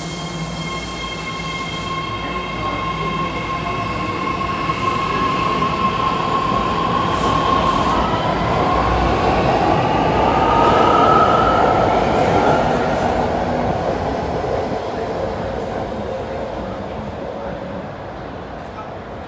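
BART Fleet of the Future electric train pulling out of a station: a steady electric whine, which climbs in pitch about eight seconds in, over growing wheel-on-rail noise. The noise is loudest about eleven seconds in and fades as the last cars pass.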